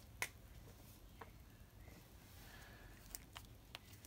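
Near silence: room tone with a few faint, short clicks, one just after the start and a small cluster near the end.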